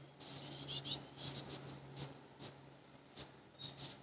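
A small songbird chirping: a quick run of short, high, falling chirps in the first second and a half, then a few single chirps spaced out toward the end.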